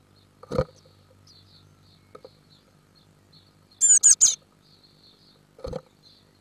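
Small birds in a wooden nest box: a thump about half a second in as a bird knocks against the box, three quick, loud, high chirps a little after the middle, and another thump near the end, over a faint low hum.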